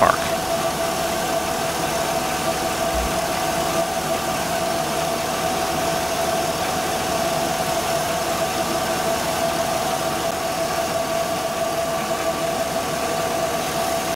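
Pickup truck engine idling steadily under the open hood, warm and in park, with a steady high whine above the running noise.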